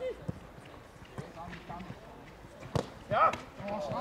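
Football players shouting on an open pitch, with a few dull thuds of the ball being kicked. The sharpest kick comes just under three seconds in, followed at once by a loud shout.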